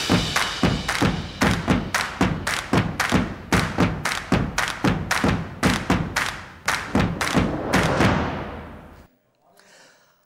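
Intro sting music built on a driving beat of heavy drum hits, about three a second, that rings away and stops about nine seconds in.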